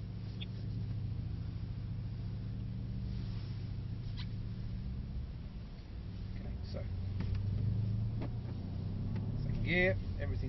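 Mercedes-AMG C63 S's 4.0-litre twin-turbo V8 running at low revs, heard from inside the cabin as the car rolls slowly through a corner. It makes a steady low hum that dips about six seconds in and then picks up a little.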